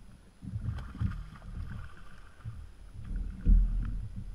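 Uneven low rumble of wind on the microphone and water moving against a fishing kayak's hull, with a louder bump about three and a half seconds in.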